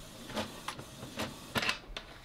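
Canon TS8220 inkjet printer working through a nozzle check print: a faint mechanical whir with a few short clicks about half a second apart.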